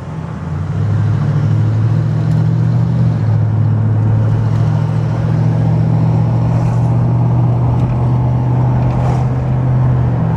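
A 1968 Camaro RS's 327 V8 engine heard from inside the cabin while driving, a low steady drone that grows louder about a second in and then holds even.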